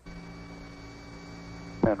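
Steady electrical mains hum on an aircraft intercom recording, a buzz of several even tones that cuts in abruptly. A man's voice on the intercom starts just before the end.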